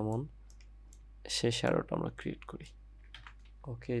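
A few computer keyboard clicks in the pauses of a man's speech.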